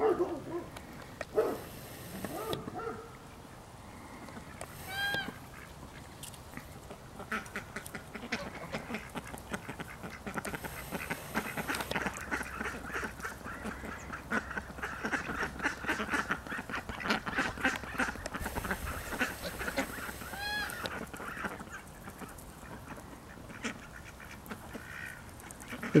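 Domestic geese honking a few times near the start, then a flock of domestic ducks quacking and chattering densely for much of the middle, with occasional single longer calls.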